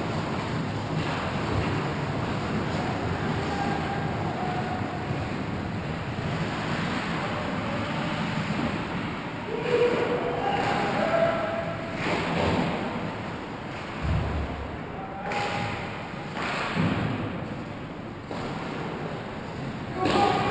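Ice hockey rink ambience during play: a steady rushing hiss with scattered knocks and scrapes of sticks, skates and puck, a little busier from about halfway through.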